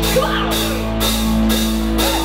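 Live rock band playing loudly: bass guitar, electric guitar and drum kit holding a sustained chord, with cymbal wash over a steady low bass note.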